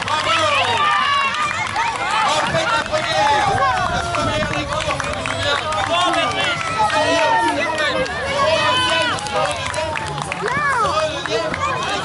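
Crowd of spectators shouting and calling out in many overlapping, high-pitched voices, without pause.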